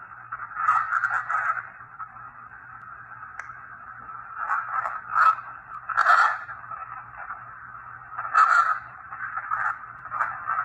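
Spirit box (ghost box) output: a thin, hissing wash of sweeping radio noise with a steady low hum under it. It swells louder several times, around one, five, six and eight and a half seconds in, with short clicks. Fragments in the noise are taken for spirit voices.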